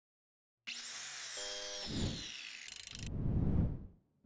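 Sound-effect sting for an animated logo: a moment of silence, then a swelling whoosh with a slowly falling whistle, a quick rattle about two and a half seconds in, and low thuds that fade out just before four seconds.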